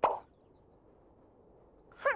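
A single short plop at the very start, fading within a few tenths of a second. Near silence follows until a voice begins near the end.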